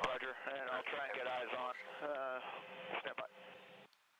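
Radio voice traffic that cannot be made out: one or more voices over an aircraft radio, narrow and tinny, stopping a little before the end.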